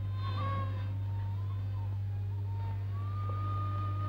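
A single thin, sustained high note from the film's background score. It wavers, sags lower about halfway through, then slides up to a higher pitch that it holds to the end. A steady low hum from the old soundtrack runs under it.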